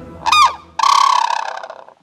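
White-naped crane calling with its bill raised skyward: a short rising-and-falling call, then a longer, louder call held on one pitch that fades away.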